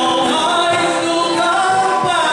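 Live Irish folk band playing a ballad: a male lead voice singing over tin whistle, strummed acoustic guitar and bodhrán.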